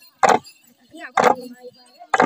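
Bamboo staffs struck on the ground together in a steady dance beat, about one stroke a second and twice here, with faint group chanting between the strokes.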